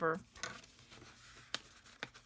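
Sheets of patterned paper and cardstock handled on a cutting mat: a faint rustle of paper sliding, then a single sharp tap about one and a half seconds in.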